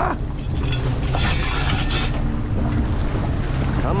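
Fishing boat's engine running steadily under wind buffeting the microphone, with choppy sea water washing against the hull; a louder rush of water about a second in lasts under a second.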